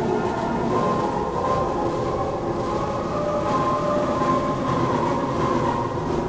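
Ambient music from a record built on old ballroom recordings: long-held, smeared tones drawn out over a dense rumbling wash, with no beat.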